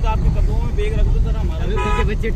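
Engine and road rumble heard from inside a moving car on a dirt road, with voices talking in the background. A brief steady tone sounds near the end.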